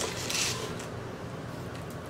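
A brief soft rustle about half a second in as fried chicken drumsticks are handled on a paper plate, over the steady low hum of a room air conditioner.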